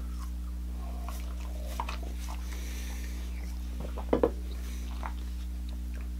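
Steady low electrical hum, with a few faint wet smacks and clicks, the clearest about four seconds in.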